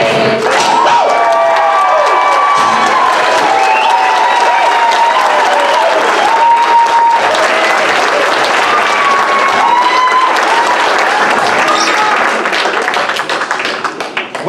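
Audience applauding and cheering, with shouts and whoops over the clapping, dying away near the end.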